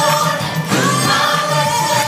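Live gospel choir singing, many voices holding notes together.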